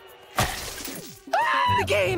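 A sudden crash-like sound effect about half a second in, fading over about a second with a falling tone beneath it.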